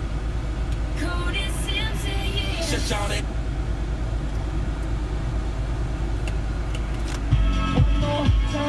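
Ford Kuga's Sony head unit playing through the car's speakers: a short stretch of broadcast speech about a second in, then music starting loudly near the end. A steady low hum from the car runs underneath.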